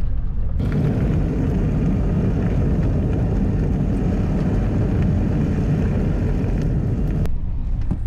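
Vehicle driving along a gravel road, heard from inside the cab: a steady low rumble of engine and road, with a hiss of tyres on gravel that comes in about half a second in and cuts off abruptly about a second before the end.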